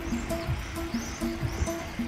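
Background music: a gentle melody of short held notes repeating.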